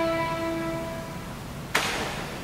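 A string orchestra's held chord dying away into the hall's reverberation, leaving a near-pause. About three-quarters of the way through there is a short, sharp hiss-like noise.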